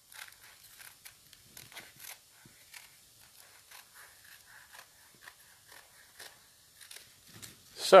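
Scissors snipping through folded wax paper with melted crayon between the layers: a quiet, irregular series of short crisp snips and crinkles.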